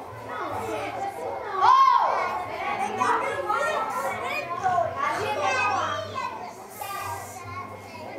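A group of children's voices calling out and chattering over one another during an outdoor circle game, with one loud, high shout a little under two seconds in.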